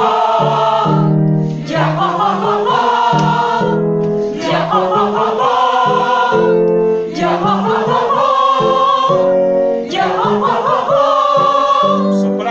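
A group of singers in unison singing a vocalise warm-up exercise, repeated in phrases of about three seconds, with a short break for breath between phrases.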